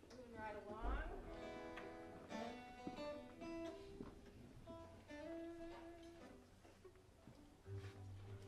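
Acoustic guitar strings plucked one at a time as they are tuned between songs, with a note sliding up in pitch in the first second as a peg is turned, then single ringing notes.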